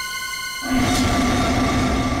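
Suspense background score of a TV crime drama: a high sustained drone that breaks, a little under a second in, into a louder low rumbling swell with a steady deep tone.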